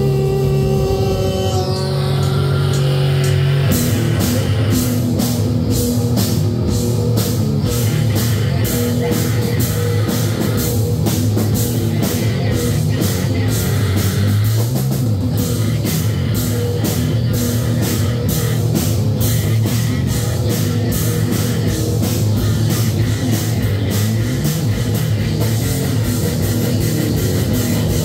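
A live powerviolence band playing loud distorted guitar, bass and drums. Sustained guitar notes ring for the first few seconds, then about four seconds in the full band comes in with fast, dense drumming.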